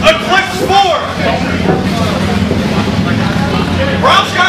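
A man's raised voice for about the first second, followed by a steady low hum.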